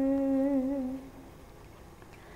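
A woman's voice, unaccompanied, holds one long note that wavers slightly and fades out about a second in.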